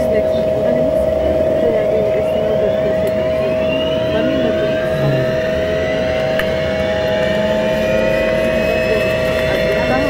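Yakovlev Yak-40's Ivchenko AI-25 turbofan spooling up at engine start, heard from inside the cabin. Several whine tones climb steadily in pitch from about a second in, over a steady high hum.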